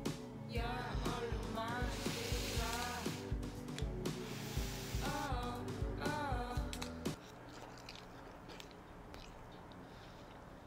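Background music with a steady beat and short gliding melodic phrases. It stops abruptly about seven seconds in, leaving quiet room tone.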